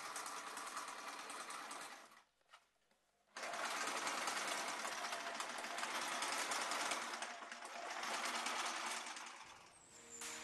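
Sewing machine running in fast stitching runs. It stops for about a second around two seconds in, starts again, and fades out near the end.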